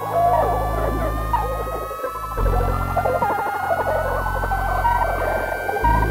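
Experimental electronic music: several steady high tones slowly glide upward together over low sustained drones that shift about every two and a half seconds, with a dense chattering texture in the middle range.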